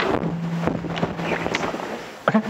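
Rustling and handling noise picked up by a lectern microphone, with a steady low hum lasting about a second and a half.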